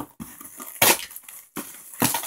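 Parcel packaging being torn open by hand: a few short crackling rips, the loudest about a second in.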